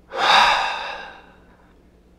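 A man's long sigh, breath pushed out through the open mouth, coming on quickly and trailing off over about a second and a half.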